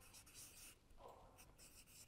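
Faint strokes of a felt-tip marker writing on flip-chart paper, a few short scratchy rubs.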